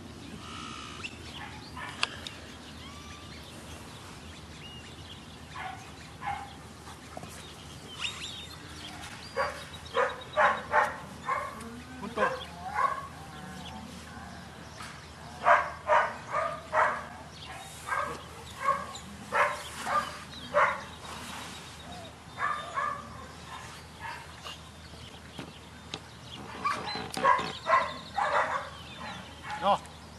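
A dog barking in runs of short barks, about three a second, with pauses of a few seconds between the runs.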